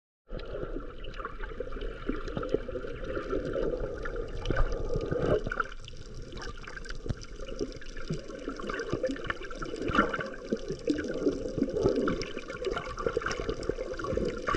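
Sea water moving around a camera held just below the surface in shallow water: a muffled, continuous wash scattered with many small clicks and pops.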